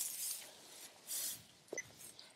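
Faint rustling of dry cut hay and handling noise in a few short, soft bursts as the sampler tube and moisture probe are picked up, with a small click near the end.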